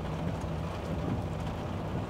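Heavy rain falling on a Volvo truck's cab and windshield, an even hiss, over the truck's diesel engine running with a steady low hum.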